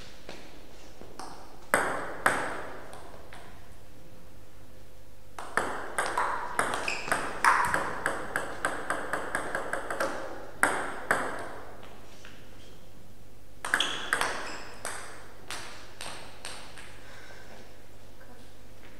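Table tennis ball clicking off the rubber-faced bats and the table in a rally: a couple of hits about two seconds in, then a fast back-and-forth run of hits lasting about five seconds in the middle, then a few more bounces near the end.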